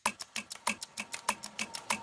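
Background music built on an even ticking beat, about six short clicks a second, with a faint held tone coming in about halfway.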